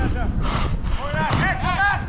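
Players' voices shouting calls across the pitch during a five-a-side football game, loudest in the second half, over a steady low rumble of wind and movement on the microphone.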